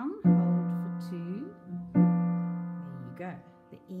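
Piano chords played with the left hand: two chords struck about two seconds apart, each held and fading away.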